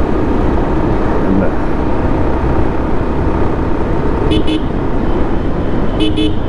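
Bajaj Pulsar 150 motorcycle engine running steadily at riding speed, with two short horn toots about four seconds in.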